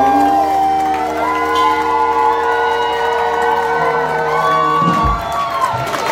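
Live band's last chord, acoustic guitar and keyboard, held and ringing out while the audience cheers and whoops over it. A short low thump comes about five seconds in.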